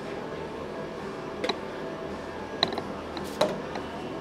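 Needle-nose pliers and a plastic chainsaw fuel tank being handled as fuel line is pulled through the tank's pickup hole. A few light clicks and creaks, spread about a second apart, sound over a steady background hum.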